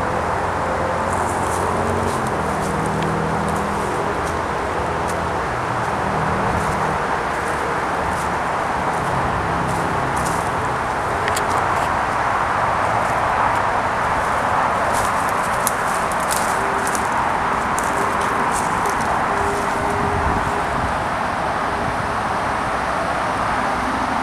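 Footsteps crackling over dry leaves and twigs on a forest floor, a scatter of short snaps and rustles, over a steady, fairly loud background noise.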